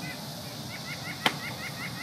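A bird chirping rapidly in short repeated notes, with one sharp click about a second in as the small racing drone is handled on the ground.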